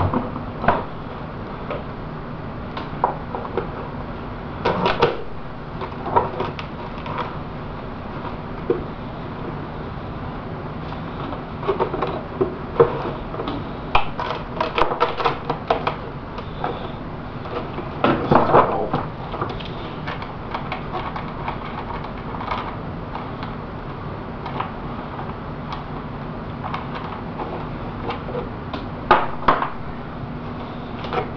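Scattered clicks, taps and crackles of a fiberglass fuselage shell being pried out of its mold with wooden popsicle sticks and wedges, with busier runs of crackling near the middle as the part works loose.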